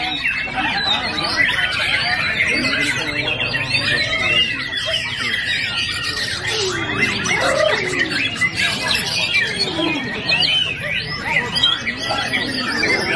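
Several white-rumped shamas (murai batu) singing at once, a dense, unbroken tangle of overlapping whistles, trills and chattering phrases, over a low background murmur.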